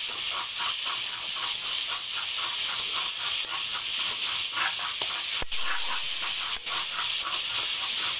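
Cauliflower and potato pieces frying in oil in a metal kadhai with a steady sizzle, while a metal spatula scrapes the pan in repeated short strokes as they are stirred. A couple of sharp clicks come a little past the middle.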